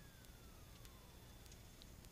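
Near silence, with a faint thin tone gliding steadily down in pitch that fades out about a second in, and a few faint ticks.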